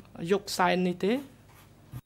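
A man speaking French for about the first second, then a much quieter pause.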